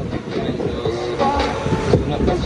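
Large swinging pendulum fairground ride running, a loud mechanical rumble and clatter.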